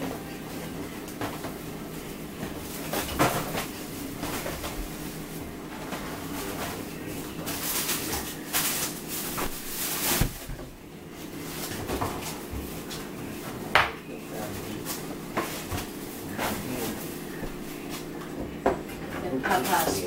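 Kitchen clatter from cupboard doors and kitchenware being moved about while someone searches the cabinets for canned spinach: scattered knocks and clinks over a steady low hum.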